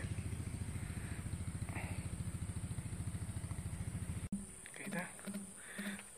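A small engine running steadily with a fast, even beat, cut off abruptly about four seconds in.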